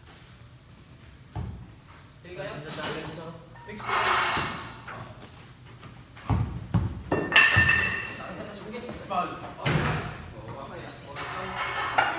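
Pickup basketball in a large hall: a handful of sharp thuds from the ball being bounced and caught, one a little over a second in, a cluster in the middle and one near ten seconds, among players' shouts, over background music.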